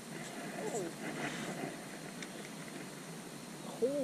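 Quiet steady background hiss with a faint distant voice early on; near the end a man's startled exclamation, "Holy!", as a fish strikes his line.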